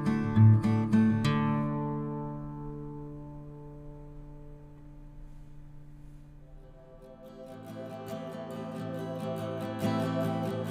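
Background music on acoustic guitar: plucked notes ring out and fade away after about a second, and the music swells back in about seven seconds in.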